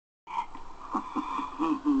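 A person's low, croaky voice making short sliding sounds, ending on a held "ah".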